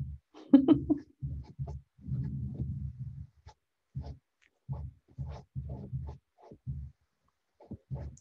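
A woman laughs briefly, followed by a string of short, low, muffled sounds at irregular intervals.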